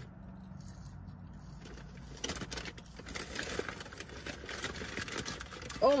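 Mouth sounds of chewing french fries, with small clicks and rustles of a paper food bag that grow more frequent from about two seconds in, over a low steady hum.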